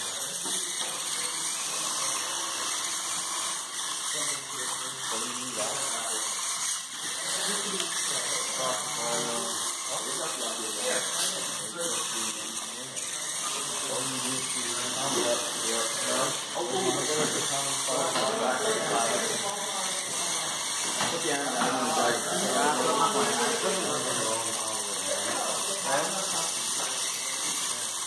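Several people talking indistinctly over a steady high hiss, with the chatter getting louder in the second half.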